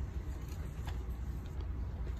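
Steady low rumble of shop background noise picked up by a handheld phone, with a faint click about a second in and another near the end.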